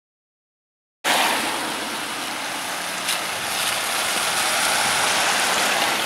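Steady hiss of rain on a wet street, cutting in suddenly about a second in and swelling a little towards the end, with one brief click about three seconds in.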